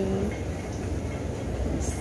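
A steady low rumble of background noise in a large indoor hall, with no distinct events.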